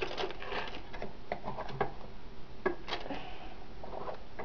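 Irregular light clicks, taps and rustles of plastic Play-Doh toys being handled as a child pushes dough into the mouth of a plastic Cookie Monster toy.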